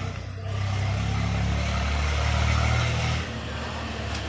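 A motor vehicle's engine running loudly, rising about half a second in and dropping away after about three seconds.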